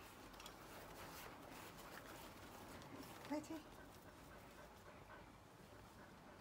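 Near silence, with a dog's faint panting and light rustling.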